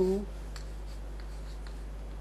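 Chalk writing on a chalkboard: a few faint, scattered taps and scratches as numbers are written, over a steady low hum.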